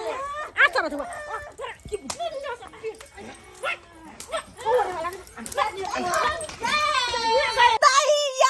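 Excited voices talking and calling over one another. Near the end comes a woman's long, drawn-out wailing cry.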